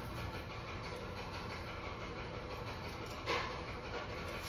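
Steady background hiss with a low hum, and a short rasp about three seconds in as athletic tape is pulled off the roll during ankle taping.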